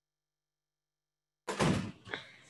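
Dead silence, then about one and a half seconds in the sound cuts in abruptly with a thump as a man starts speaking ("All…").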